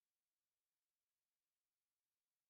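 Near silence: an empty audio track with only a faint, even digital noise floor.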